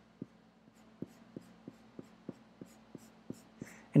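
Faint kneaded eraser rubbing on graphite-covered drawing paper in short repeated strokes, about three a second, lifting graphite off to lighten the area.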